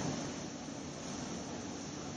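Steady room noise: an even, constant hiss like ventilation or air conditioning, with no other event.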